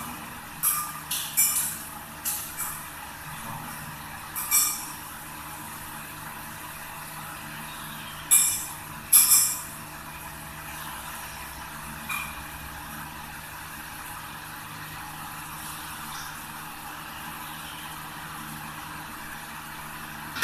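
Small brass puja vessels and utensils clinking against each other and against the stone floor: a scattering of short, sharp metallic clinks, the loudest two a second apart near the middle. A steady low hum runs underneath.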